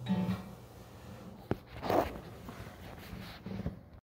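An acoustic guitar's last ringing chord is cut off, followed by handling noise from the recording phone: a sharp knock about a second and a half in, a louder rustle just after, and a few small knocks near the end.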